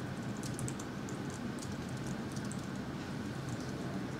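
Typing on a laptop keyboard: irregular key clicks, over a steady low room hum.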